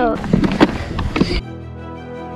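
Rumble, wind on the microphone and scattered knocks from a plastic ride-on wiggle car rolling over asphalt. About a second and a half in this cuts off suddenly to background music with steady held notes.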